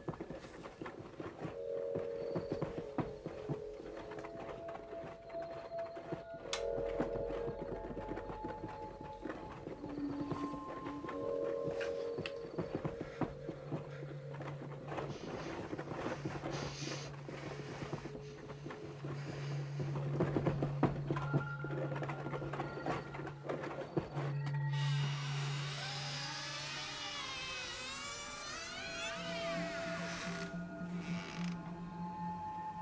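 Suspenseful horror-film score of sustained low drones and held tones under a crackling, scratchy texture. Near the end a dense, high, wavering screech swells up over it.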